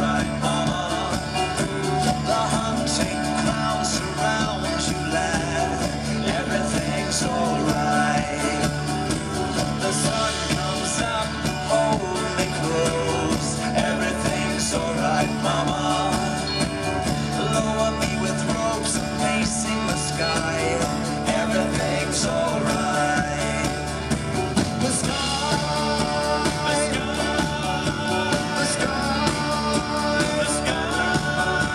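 Live rock band playing an instrumental stretch of a song on drums, guitars and bass, with a steady low drone held under it until about two-thirds of the way through.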